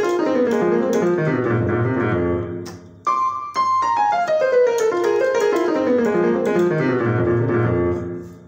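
Electronic keyboard on a piano sound playing a fast descending run on the F blues scale, played twice. Each run falls from the high notes down to the bass, and the second starts about three seconds in.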